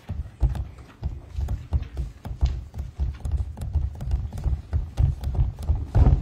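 A dense, irregular run of low thumps and knocks, several a second, starting suddenly.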